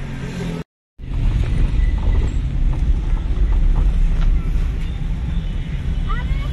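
Road traffic and the car's own engine and tyre rumble, heard from inside a moving car, with a brief cut to silence about a second in.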